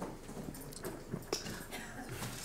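Quiet lecture-hall room tone with faint footsteps and a few scattered small knocks.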